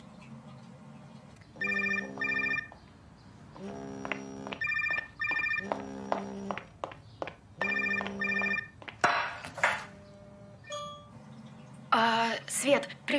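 Mobile phone ringtone: a short electronic melody of clear, pitched notes, repeated about three times. It stops about nine seconds in, as the call is answered.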